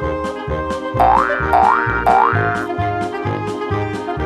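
Playful children's background music with a steady beat and bass line. Three quick rising sliding tones come about a second in.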